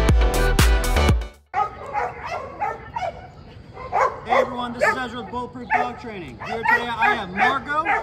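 Upbeat electronic music with a steady beat cuts off about a second and a half in. A mixed-breed dog then whines and yips repeatedly, in short rising-and-falling calls.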